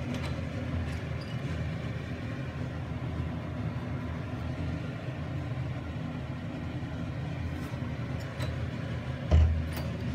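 Imasu centrifugal bathroom exhaust fan running steadily: a low hum under an even rush of air. A single thump near the end.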